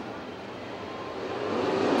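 A pack of 410 sprint cars' V8 engines running together, getting steadily louder as the field comes up to the green flag for the start.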